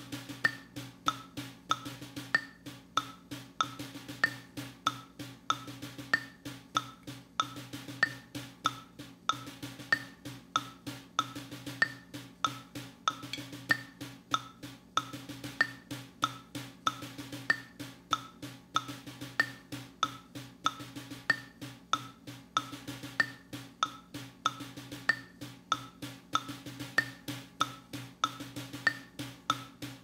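Snare drum played very quietly with wooden sticks in a steady, even stream of strokes, running sticking exercises. A woodblock-like metronome click keeps time at 95 beats per minute, about one click every 0.6 seconds.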